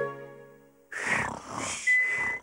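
Background music fades out, then a cartoon character snores: a rasping in-breath followed by a thin whistling out-breath near the end.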